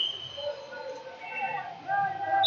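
Indistinct voices of coaches and spectators calling out across a large gym hall, with a brief high tone right at the start.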